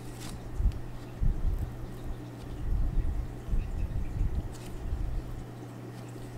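Black marker on card stock: a few short, faint scratchy strokes, with soft irregular knocks and rubbing of hands on the paper and table, over a steady low hum.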